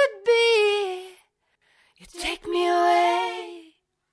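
Isolated female lead vocal from a trance song, sung a cappella with no backing music. A held, sliding note ends about a second in; after a short silence and a breath, a second long held phrase is sung and fades out shortly before the end.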